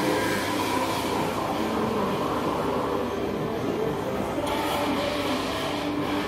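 Steady hum and hiss of a café's room noise, with no distinct events.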